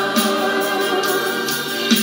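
Choral music: a choir singing, holding long notes.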